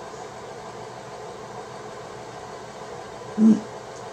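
Steady low room hiss with a faint hum, then a woman's short, loud 'mm' of satisfaction about three and a half seconds in, right after she drinks wine from a glass.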